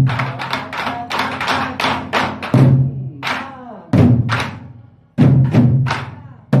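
A group of Korean barrel drums (buk) played in unison with wooden sticks in a nanta rhythm: deep booming drumhead strikes mixed with quick, sharp stick clacks, at times about four strikes a second.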